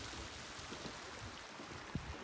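Hot spring water running over travertine terraces: a steady, even rushing. A brief thump comes near the end.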